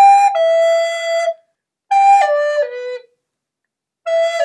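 A solo flute playing a slow melody of held notes. A first two-note phrase stops about a second and a half in, and after a short pause a descending three-note phrase ends about three seconds in.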